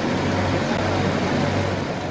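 Steady outdoor noise with a low, even engine hum, typical of a bus idling close to the microphone.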